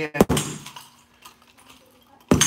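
A nunchuck strike against a heavy punching bag: one sharp smack about a quarter second in, with a short clattering rattle that fades within about a second.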